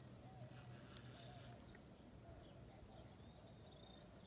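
Near silence: faint outdoor ambience, with a faint high hiss for about a second near the start.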